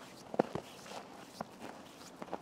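Footsteps on a snow-covered path: a few separate sharp steps, two close together about half a second in and another just before the middle, over faint outdoor background.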